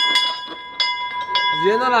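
Small tower bell rung by its clapper: two strikes about a second in and half a second apart, each over a steady ringing tone left by earlier strikes. A man starts talking near the end.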